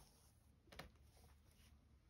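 Near silence: faint rustling of linen and thread handled during hand sewing, with one slightly louder soft rustle a little under a second in.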